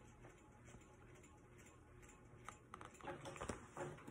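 Near silence: room tone, with faint clicks and rustling of handling in the last second or so.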